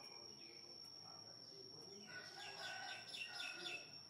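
Faint outdoor background: a steady high insect whine, with a bird calling in a quick run of chirps from about halfway through until just before the end.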